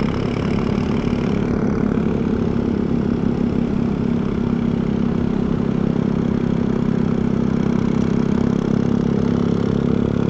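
Motorcycle engine running at a steady, even pitch while cruising, heard from a camera mounted on the bike, with road and wind noise over it.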